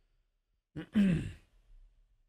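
A man sighs once about a second in: a short intake of breath, then a voiced exhale that falls in pitch.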